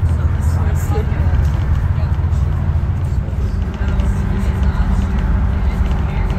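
Inside a bus cruising at motorway speed: a steady low rumble of engine and tyre noise. A faint steady hum joins a little past halfway through.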